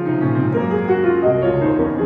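Piano music: a passage of overlapping, sustained chords and melody notes played at an even level.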